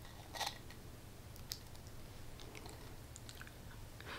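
Faint, sparse little clicks and soft mouth sounds as a creamy satin lipstick is worked across the lips, over quiet room tone.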